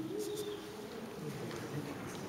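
A string instrument playing a soft held note, its pitch stepping up a little just after the start and then holding steady.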